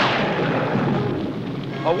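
Cartoon sound effect of a lightning thunderclap: a loud crack that dies away into a rumble over about two seconds, with rain underneath.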